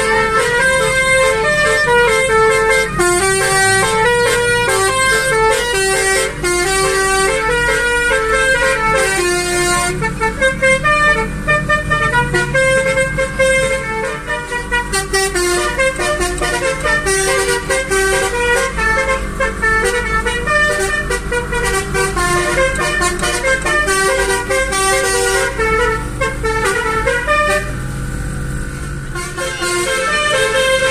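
Basuri musical air horn playing a fast tune of stepped notes, one pitched note after another, over a steady low rumble of the car and traffic.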